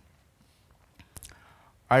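A pause in a man's talk, close to silence, broken about a second in by a faint mouth click and a short in-breath on the headset microphone; his voice comes back right at the end.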